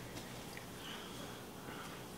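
Quiet, soft tearing of a freshly cooked pandan waffle pulled apart by hand, barely above room tone.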